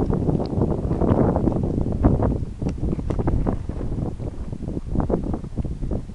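Wind rumbling on the microphone, with irregular knocks and scuffs running through it.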